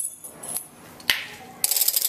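A small percussion instrument played as a sound effect for cutting the dough: two sharp clicks, then a quick rattling run of clicks near the end.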